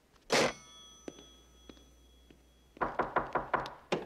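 A candlestick telephone's receiver hung up with a sharp clack and a metallic ring that fades over about two seconds. Near the end comes a fast run of knocks on a wooden panelled door.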